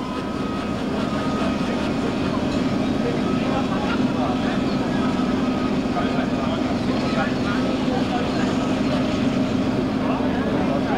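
Steam locomotive working away under steam, a steady rush of exhaust and running noise with no distinct beats.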